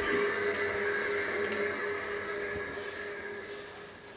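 A steady hum with one held tone over a faint hiss, fading away over the last second or two.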